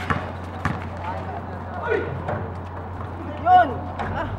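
A basketball bouncing on a hard court a few times as a player dribbles, amid players' voices, with a short loud shout near the end.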